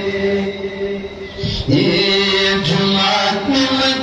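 A man's voice chanting a Pashto naat into a microphone, holding long, steady notes, with a break and a change of pitch about a second and a half in.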